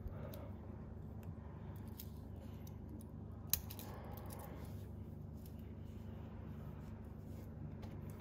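Handling of stainless-steel wristwatches over a steady low room hum: a few faint clicks and one sharp metallic clink about three and a half seconds in as the watches are put down and picked up.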